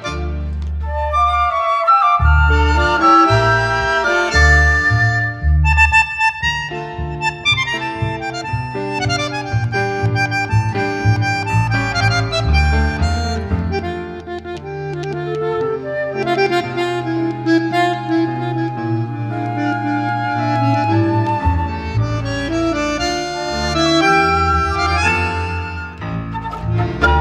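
Instrumental tango orchestra recording: a bandoneon-like reed instrument carries the melody over chords and a marked, pulsing bass line. The bass pulse eases into longer held notes for a stretch in the middle, then returns strongly near the end.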